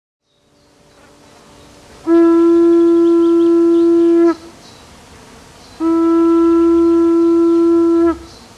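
Curved animal horn blown as a hunting horn: two long, steady blasts on the same single note, each a little over two seconds, with a pause of about a second and a half between them.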